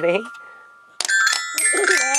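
Toy metal-bar glockenspiel struck with a stick: a ringing note fades out over the first second, then a fresh strike about a second in sets several bright notes ringing.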